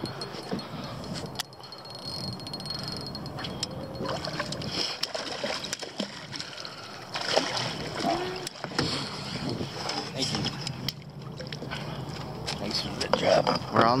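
A hooked fish splashing at the water's surface as it is scooped up in a landing net, with water sloshing around the net.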